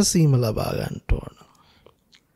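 A Buddhist monk speaking into a microphone. His voice falls and trails off about a second in, followed by a short click and then a quiet pause.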